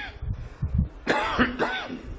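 A man coughing and clearing his throat close to a microphone, with low puffs at first and then two short voiced clearing sounds in the second second.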